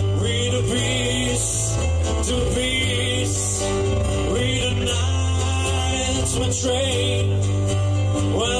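Live band playing: acoustic and electric guitars, held bass notes and drums with a cymbal hit every couple of seconds.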